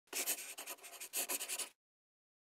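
Pen scratching on paper in quick strokes, in two runs of scribbling that stop abruptly just before the end.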